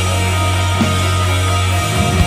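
Post-black-metal band playing live: a dense, steady wall of guitar over a sustained low bass note, with a drum hit about a second in and the bass note changing near the end.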